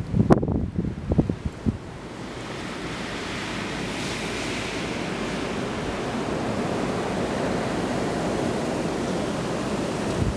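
Wind blowing over the microphone, a steady rushing noise that builds gradually a couple of seconds in and then holds. A few muffled bumps come in the first two seconds.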